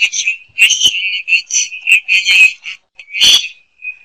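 Garbled, tinny audio coming through an online meeting connection: choppy chirping bursts in which no words can be made out.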